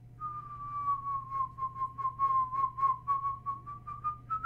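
A person whistling one long note that dips slightly in pitch and then rises, over a quick run of soft clicks.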